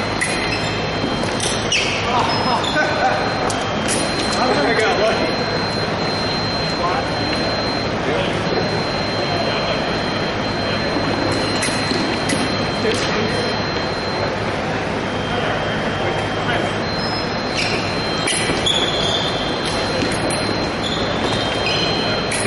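Foil bout in a gymnasium hall: sharp clicks and knocks from blades and fencers' footwork on a hardwood floor, over a steady murmur of voices. A thin high electronic tone comes and goes, sounding for several seconds at a time.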